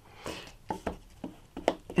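A few light clicks and taps from handling a Stampin' Up! classic ink pad's plastic case while a foam sponge brayer is set onto the pad to load it with ink.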